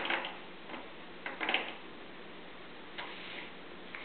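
Wooden activity-cube pieces clicking and clacking as a baby handles them, in a few irregular taps with a louder cluster about a second and a half in.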